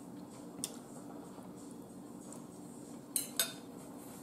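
A metal fork clinking against a ceramic bowl: one light tap about half a second in, then two sharper clinks in quick succession about three seconds in.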